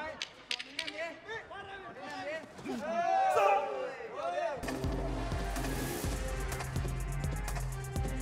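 Excited shouting voices from the fight, with a few sharp smacks of strikes landing and the loudest shouting a little after three seconds. About four and a half seconds in, music with a steady beat and heavy bass starts suddenly.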